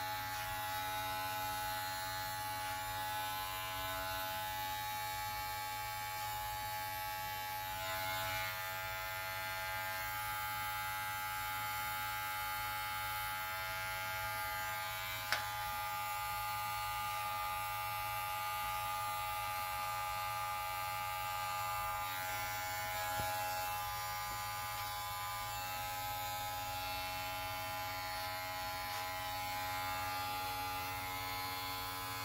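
Electric hair clipper running steadily, buzzing as it cuts short hair in a taper, with one sharp click about halfway through.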